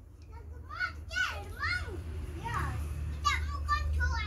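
A young child's high-pitched voice: a string of short calls and babbling sounds that rise and fall in pitch, over a low steady hum that grows louder about halfway through.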